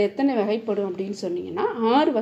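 Only speech: a woman's voice speaking Tamil in a steady lesson narration.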